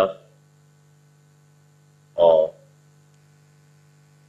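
Steady low electrical hum, with the end of a spoken word at the very start and one short spoken syllable about two seconds in.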